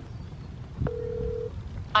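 A smartphone on speaker playing its outgoing-call tone: one steady beep lasting a bit over half a second, about a second in.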